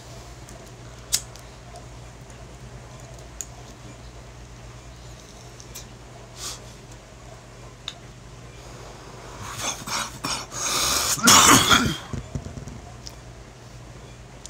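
A hit from a glass hand pipe drawn down to the resin at the bottom of the bowl: a few faint clicks, then a long breathy draw from about nine and a half seconds in that ends in a cough.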